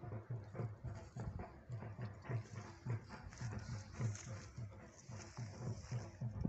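Footsteps on a dry, grassy hillside slope: a quick run of soft thuds, about three a second, with a steady high rustle or hiss, as heard on a handheld phone.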